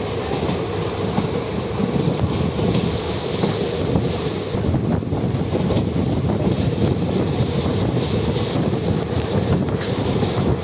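Steady running noise of a moving passenger train heard from on board, the wheels rolling on the rails.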